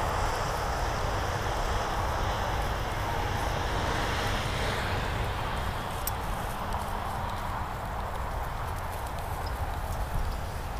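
Steady outdoor noise of wind on the microphone and road traffic passing close by, with a brief sharp click about six seconds in.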